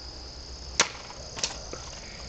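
Steady high chirring of insects, with two short sharp knocks, about a second in and again half a second later.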